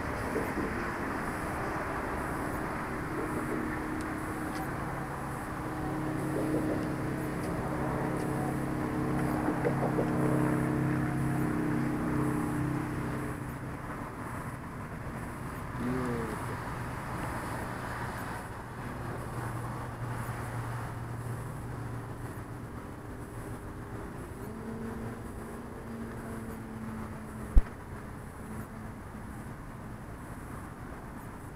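Electric RC biplane's Hacker A50 brushless motor and APC 17x10E propeller in flight, a steady pitched drone. It grows louder about a third of the way in, swoops in pitch around the middle, then carries on fainter. A single sharp click comes near the end.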